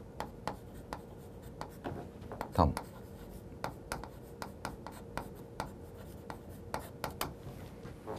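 Chalk writing on a chalkboard: a quick, irregular run of short taps and scratches as each stroke is made, stopping near the end.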